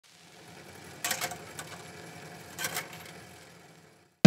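Quiet old-film sound effect: a low mechanical hum and hiss like a running film projector, with two brief bursts of crackling clicks, fading out near the end.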